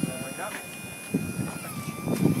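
Stryker powered stretcher's motor whining steadily as the minus button folds the legs up, its pitch dipping slightly near the end.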